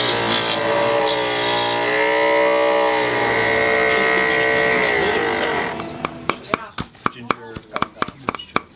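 Homemade coconut grater's battery-powered electric motor whining steadily as a coconut half is pressed against its spinning blade, its pitch dipping and recovering; it cuts off a little after five seconds. Then a quick run of cleaver chops on a wooden chopping block near the end.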